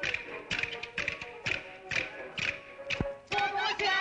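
Hua'er folk-song performance: sharp percussion strikes about twice a second over a held instrumental tone, then a singer comes in near the end.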